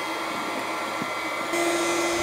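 Electric pumps of a small maple-sap reverse-osmosis system running steadily with a whirring hum while the system primes with sap. The sound gets louder, with a stronger hum, about one and a half seconds in.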